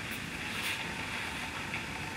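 Steady background noise with a low rumble and hiss, and no speech: room tone.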